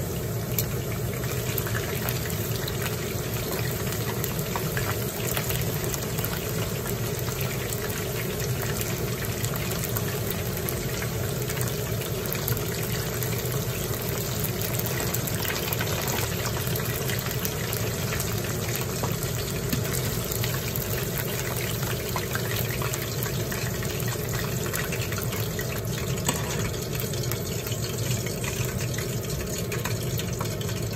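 Starch-coated chicken thigh pieces deep-frying in hot oil: a steady, dense sizzle and crackle of bubbling oil, with a few sharper clicks.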